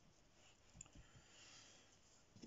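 Near silence: quiet room tone with a few faint clicks and soft taps about a second in, from a fine paintbrush dabbing small strokes on watercolour paper.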